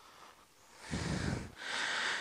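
A man's breathing: a breath out about a second in, then a breath in just before he speaks.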